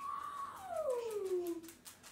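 A dog whining: one long high whine that slides steadily down in pitch and fades out near the end.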